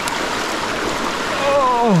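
Small mountain creek running steadily over rocks, a continuous rush of water. Near the end a man's voice gives a short sound that falls in pitch.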